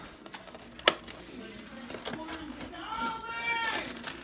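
Food packaging being handled on a kitchen counter: a plastic bag rustling and a cardboard takeout box being opened, with one sharp click about a second in. A faint voice speaks near the end.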